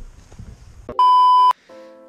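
A single loud electronic bleep, a steady 1 kHz tone lasting about half a second, edited into the soundtrack like a censor bleep. Music starts just after it, near the end.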